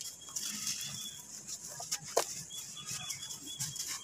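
A lump of dry red sand crumbled and broken apart by bare hands: a gritty rustle of falling grains, with a sharp crack at the start and another about halfway through.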